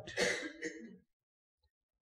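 A man briefly clearing his throat, lasting under a second.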